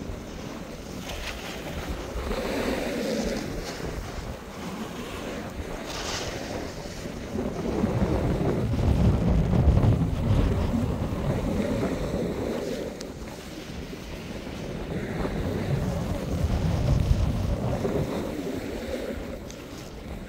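Wind rushing over a phone's microphone while moving downhill, mixed with the scraping hiss of sliding on packed snow. It swells louder twice, from about eight to eleven seconds in and again from about sixteen to eighteen.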